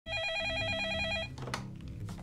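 Electronic office desk phone ringing with a fast warbling trill for about a second before it cuts off, followed by a short clatter as the handset is lifted.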